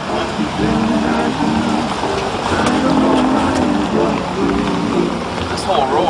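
Indistinct talking with music playing in the background.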